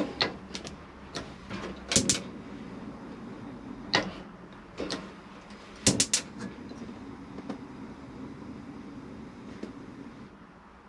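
A few sharp clicks and knocks from the oven's door and wire shelves being handled, spaced a second or two apart over a faint steady hum.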